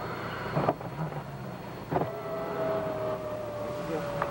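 A small electric motor whines at a steady, slightly falling pitch for about two seconds, starting with a click halfway through, over the steady rumble of a car cabin. There is another click about a second in.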